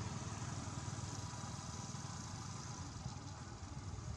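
Steady low rumble of an idling engine, unchanging throughout.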